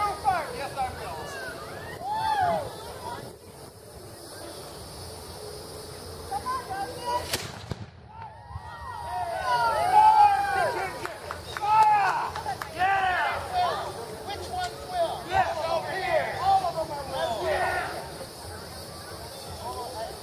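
Voices of people talking over one another, with a single sharp black-powder gunshot about seven seconds in that comes through far fainter than it really was.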